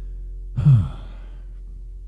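A loud sigh, falling in pitch and lasting under half a second, about half a second in. Under it a low held note lingers steadily from the end of the song.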